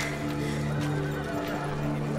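Background score music with long held low notes, with a horse neighing and hooves clip-clopping.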